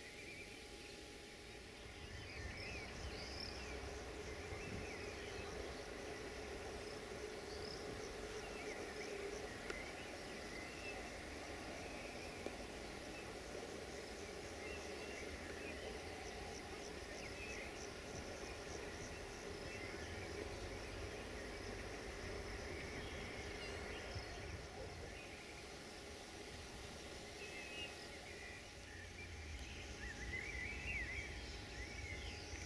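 Outdoor ambience of birds and insects chirping, over a steady low rumble that grows louder about two seconds in.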